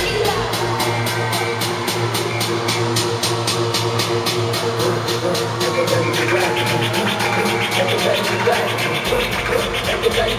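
Live concert music played loud over an arena PA, an electronic instrumental with a fast, even beat and no vocals. The deep bass drops out after the start and comes back in about nine seconds in.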